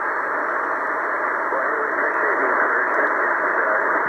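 Tecsun PL-880 shortwave receiver in lower sideband on the 40-metre amateur band, its speaker giving loud, steady band noise. A weak station's voice is buried in the noise, faintly heard from about halfway in.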